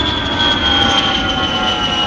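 Jet airliner's engines at takeoff power heard from inside the passenger cabin as the plane lifts off and climbs: a steady rumble under a high whine that slowly drops in pitch.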